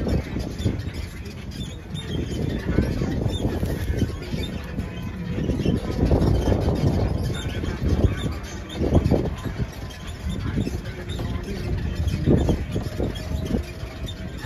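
Open-air tram running along a paved path, its running noise mixed with wind buffeting the microphone in gusts.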